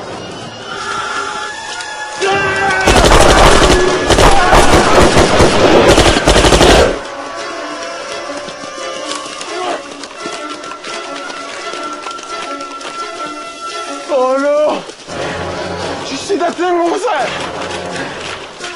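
Film soundtrack with a sustained burst of automatic gunfire lasting about four seconds, starting about three seconds in. It is set over dramatic score music, with a sharp cry at about fourteen and a half seconds and shouted voices near the end.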